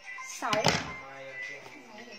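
A woman says a single word, with a brief thump or knock at the same moment, over quiet background music.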